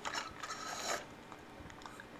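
Plastic bag and small objects rustling and clicking as a pet monkey's hands rummage through them: a crinkly rustle for about a second, then a few faint clicks.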